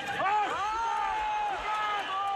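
A judo coach shouting several short, high-pitched calls in a row from the side of the mat, demanding 'ippon' for his fighter.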